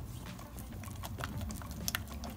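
Spatula stirring a thick chocolate brigadeiro paste in a metal pot: soft, irregular squelches and clicks as the paste is worked, with a sharper click near the end.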